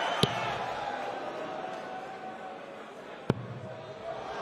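Steel-tip darts striking a Winmau bristle dartboard: a light thud just after the start and a sharper, louder one about three seconds later. Under them runs a low, fading crowd murmur.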